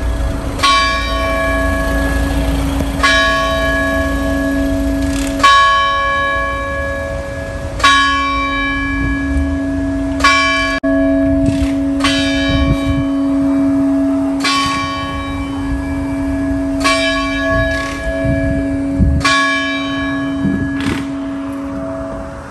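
A large bell tolling, probably a church bell. It strikes about nine times at roughly two-and-a-half-second intervals, and each strike rings on over a lingering hum.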